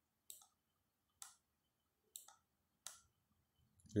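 Four faint, sharp clicks of a computer mouse button, about a second apart.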